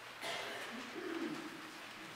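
A baby cooing and babbling softly, a short wavering voice that rises and falls in pitch.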